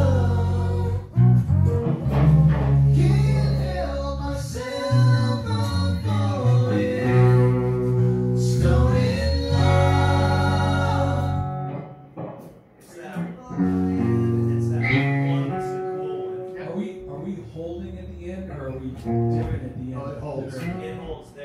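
Several male voices singing in harmony over guitar accompaniment. The music drops off briefly about twelve seconds in, then resumes.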